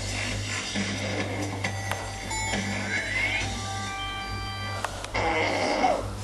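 Music playing from a television in the room, with short held tones at several pitches and a brief rising glide; it gets louder near the end.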